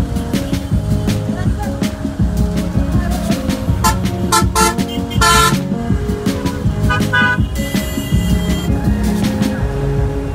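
Vehicle horns honking in heavy city traffic: a cluster of short toots about four to five and a half seconds in, the last one longest, and another short run of honks near seven seconds. Background music plays throughout.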